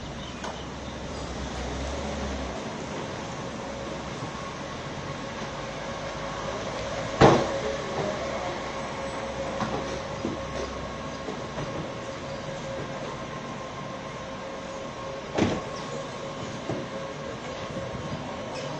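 Vehicle noise from an SUV moving slowly and pulling up: a steady rumble with a steady whine over it. Two sharp knocks stand out, about seven and fifteen seconds in, the first the loudest sound.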